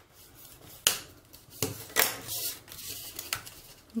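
Origami paper being handled and creased by hand: soft rustling with a few sharp crackles of the folded paper, the first about a second in.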